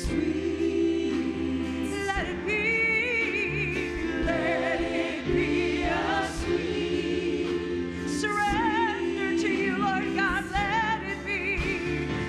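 A woman singing a gospel worship song with wavering vibrato on held notes, backed by other voices and a live band's sustained chords and bass.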